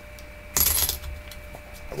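Quarters clinking together: one short metallic jingle with a faint ring, about half a second in.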